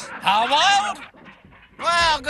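Dingoes whining and yelping: a high cry that bends up and down in pitch in the first second, then another starting near the end.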